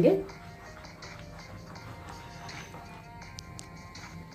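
Gram-flour dhokla batter being stirred and beaten by hand in a bowl, a soft scraping under quiet background music.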